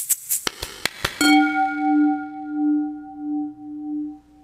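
Title-card music sting: a quick run of clicks, then about a second in a single bell-like tone that rings on, its loudness slowly swelling and fading.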